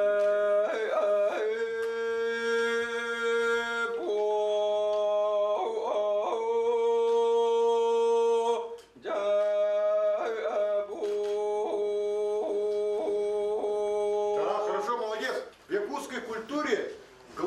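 A man singing a Yakut toyuk solo. He holds long, steady notes broken by quick yodel-like throat catches, the kylyhakh ornaments, and takes one short break about halfway through.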